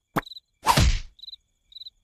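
Cartoon impact sound effect: a quick click, then a loud thud about two-thirds of a second in that fades away. Crickets chirp in short bursts underneath.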